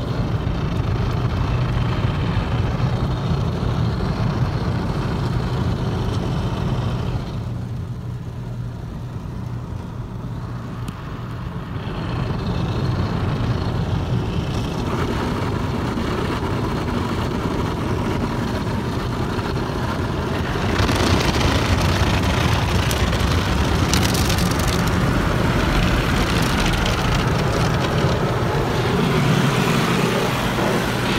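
Mark VII ChoiceWash XT soft-touch car wash, heard from inside the car's cabin: spinning cloth brushes scrub against the body and glass while water sprays over it, over a steady machine hum. The sound eases for a few seconds about a third of the way in, then grows louder, with a harder hiss of spray, from about two-thirds in.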